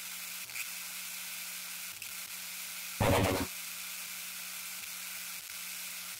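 Steady static-like hiss with a faint low hum under it, broken about three seconds in by a short whoosh lasting half a second.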